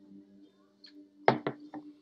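Three quick knocks a little past a second in, the first the loudest and each one fainter, over a low steady background of music.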